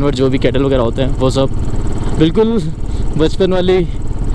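A man talking over the steady low running of a motorcycle engine while it is ridden along the road.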